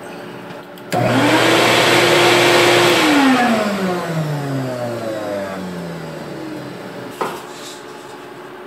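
Shop vacuum motor starting about a second in with a quickly rising whine. It runs steadily for about two seconds, then is switched off and winds down over several seconds in a falling whine. A sharp click comes near the end.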